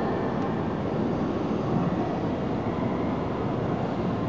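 Steady low rumble of a locomotive-hauled train approaching slowly along the platform track while still some way off, heard against the echoing hum of a large covered station.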